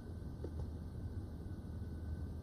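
A footstep about half a second in, the last of a run of evenly spaced steps, over a low steady room hum.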